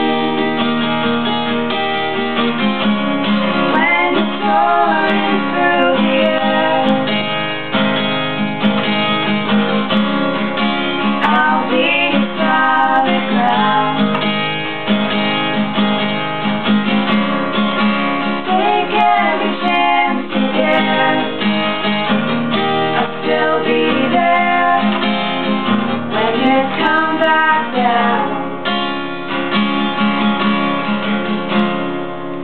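Acoustic guitar strummed in a steady accompaniment, with women singing a song along with it.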